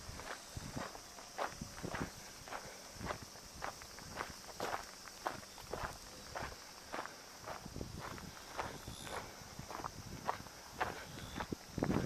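Footsteps on loose gravel ballast at a steady walking pace, about two to three steps a second.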